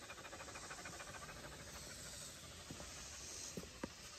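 A dog panting, quick and faint, with a couple of small clicks near the end.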